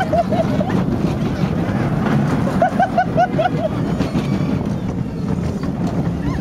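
Gadget's Go Coaster junior roller coaster train running along its track, a steady rumble with wind buffeting the microphone. About two and a half seconds in, a rider gives a quick run of laughter, about five short bursts in a second.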